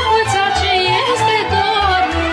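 Romanian folk song from Oltenia performed by a folk orchestra: an ornamented, wavering melody line that falls near the end, over a steady bass beat.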